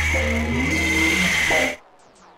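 Experimental electronic noise music: a dense, hissing synthesized texture over a low steady drone, with a steady high tone and a few short gliding tones. Near the end it cuts off suddenly to a much quieter level.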